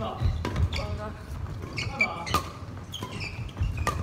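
Badminton doubles rally on a wooden gym floor: rackets strike the shuttlecock with several sharp hits, and shoes squeak and thud on the floor as the players move.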